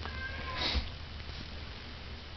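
A kitten's meow: one short, thin, high cry that falls in pitch, lasting under a second.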